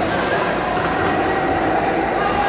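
Large electric floor fans running with a steady whirring rush, heard against the echoing background din of a big sports hall.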